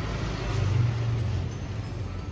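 Low engine hum of street traffic beside the stall, swelling about a second in as a vehicle passes close by.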